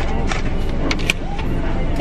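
Steady low rumble of a car idling at a standstill, with a few short clicks and knocks.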